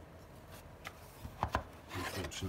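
Cardboard watch box being handled and set down on a wooden tabletop: a faint tap a little under a second in, then a couple of sharp knocks near the end.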